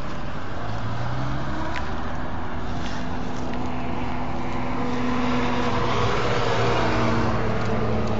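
Road traffic engine noise: motor vehicle engines run steadily, their low pitch shifting up and down as vehicles move, over a constant rushing noise.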